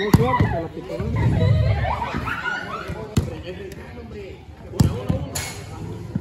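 A football struck hard by a kick, a sharp thud right at the start, then two more ball impacts a little after three seconds and near five seconds, with players shouting in between.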